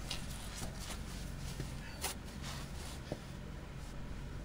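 Quiet handling noise: faint rustling as a person shifts and reaches under the truck, with two light clicks about halfway and three-quarters of the way in, over a steady low hum.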